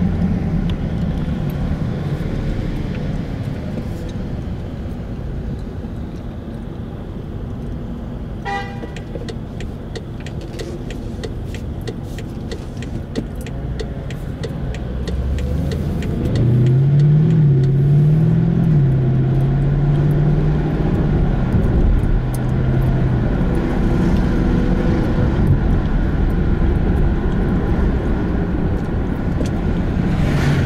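Car engine and road noise while driving, heard from inside the car. About halfway through the engine note rises and falls as the car speeds up, then holds at a steady pitch with louder road noise.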